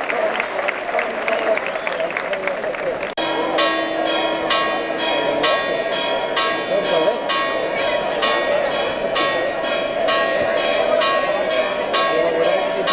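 Crowd clapping and voices for about three seconds. Then, after a sudden cut, church bells peal rapidly, about two strikes a second, over the noise of the crowd. It is a festive peal ringing out as the Virgin's image leaves the church in procession.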